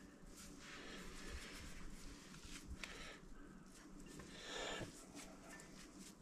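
Faint handling sounds of hands pressing and packing sticky cooked rice into a ball over quiet room tone, with a few soft ticks and a brief soft rustle about three-quarters of the way through.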